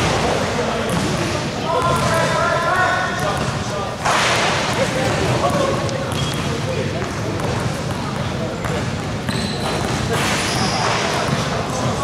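Echoing sound of an indoor basketball game in a sports hall: players' voices and calls, with a basketball bouncing on the court floor now and then, and a sudden louder burst about four seconds in.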